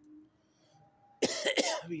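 A man coughing: a sudden burst of a few hard coughs just over a second in.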